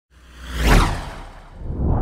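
Whoosh sound effect for an intro transition: a swish over a deep rumble that swells to a peak a little under a second in, fades, then swells again near the end.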